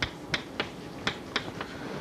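Chalk tapping and clicking against a blackboard as letters are written, about six sharp taps at an uneven pace.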